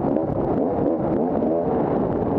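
A 250-class enduro dirt bike's engine running hard on a trail, its pitch rising and falling quickly as the throttle is worked, with short clicks and clatter from the bike over rough ground.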